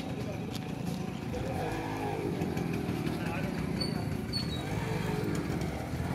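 Several people talking indistinctly over the steady low running of a vehicle engine, with two short high chirps about four seconds in.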